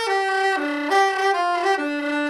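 Soprano saxophone playing a legato melody line: a run of connected notes, several to the second, mostly stepping downward in pitch.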